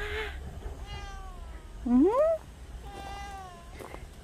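A cat meowing twice, two drawn-out calls about a second in and about three seconds in. Between them a woman's voice gives a short rising, questioning "eung?".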